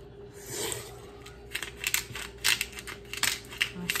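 Disposable black pepper grinder being twisted: a quick run of short grinding strokes, starting about a second and a half in.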